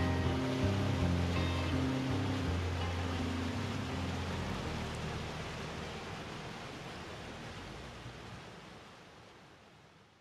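Background music with held low notes over the steady rush of a fast stream running over small rapids. The music thins out about halfway through, and everything fades gradually to near silence by the end.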